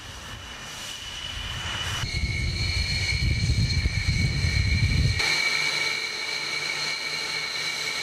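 Military jet aircraft engines on an airfield: a low rumble that builds over about five seconds and cuts off abruptly, under a steady high turbine whine.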